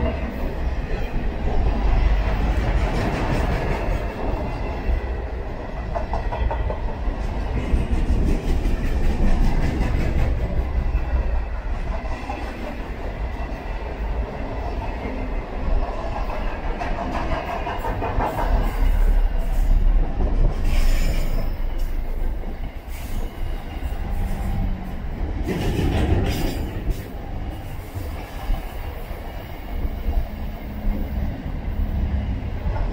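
Freight train of container-laden flat wagons rolling past: a steady rumble of wheels on rail with clacking over the rail joints. A few sharper metallic noises come about two-thirds of the way through and again near the end.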